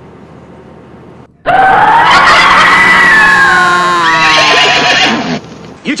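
A loud, long scream starts suddenly about a second and a half in and slides steadily down in pitch over about four seconds before breaking off.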